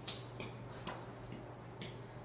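Regular ticking like a clock or countdown timer, about two ticks a second, over a steady low hum.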